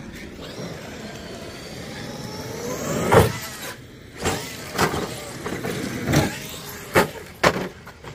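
Traxxas RC monster truck accelerating toward a ramp with a rising motor whine, then a loud thud about three seconds in as it hits the ramp. Several sharp thumps follow as it lands and tumbles, its body coming off.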